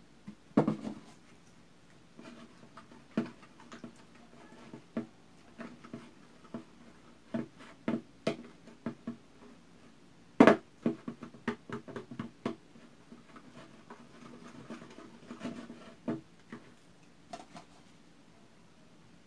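Wire whisk tapping and scraping against a plastic bowl as slime is stirred with liquid detergent mixed in as activator: irregular clicks and knocks, the loudest about half a second in and about ten seconds in.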